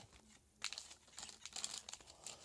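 Faint crinkling of a sealed foil hockey card pack wrapper being picked up and handled, starting about half a second in as scattered crackles.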